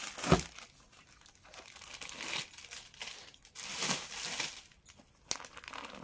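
Rustling and crinkling of packaged clothing being handled and laid out, in several short bursts with quieter gaps, with a sharp thump about a third of a second in.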